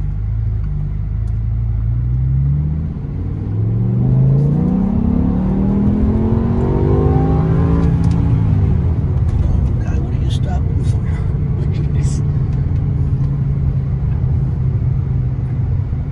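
BMW M6's 5.0-litre V10 under hard acceleration after a downshift. The engine note climbs and drops briefly at a gear change about three seconds in. It then climbs steeply to about eight seconds, falls away and settles into a steady cruise.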